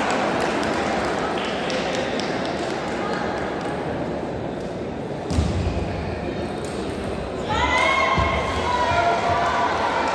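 Table tennis balls clicking off bats and tables across a large sports hall, over a steady murmur of voices. A low thump about five seconds in, then a raised voice calls out for about two seconds near the end.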